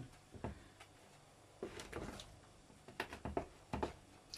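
A spoon stirring thick kefir pancake batter in a plastic bowl: faint scrapes and taps of the spoon against the bowl, in a few short clusters.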